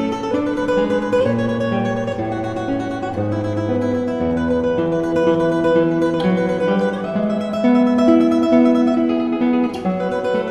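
Background music: a solo classical guitar playing a melody over held bass notes.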